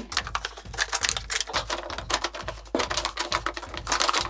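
Desktop punching ball on a coiled-spring stand being punched repeatedly, its stand rattling in a fast, irregular run of clicks.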